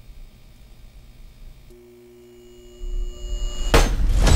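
Trailer sound design: a faint, steady electronic hum of several held tones comes in about halfway, a low rumble swells beneath it, and a single sharp, loud hit lands just before the end.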